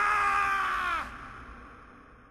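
A drawn-out, wordless scream from an animated character's voice, held on one pitch, then dipping and breaking off about a second in, with a tail that fades away after it.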